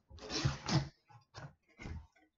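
Cardboard courier package being wrestled open by hand: about a second of tearing and rustling with a strained grunt, then a couple of short scrapes.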